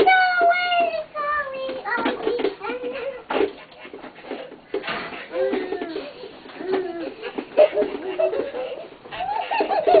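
Young children's voices: a long high squeal that falls in pitch in the first second, then scattered short babbles and vocal sounds, with a few sharp knocks in between.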